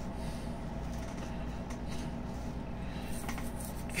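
Faint rustling of plush toys being handled, over a steady low hum.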